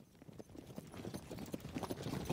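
Sound-effect horse hoofbeats, rapid and irregular, fading in from silence and growing louder.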